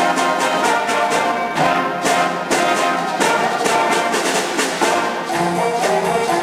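School jazz band playing a Latin-rock groove: brass and saxophones over a steady drum beat.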